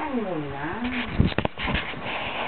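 A single drawn-out cry that slides down in pitch, followed by several sharp knocks in the second half.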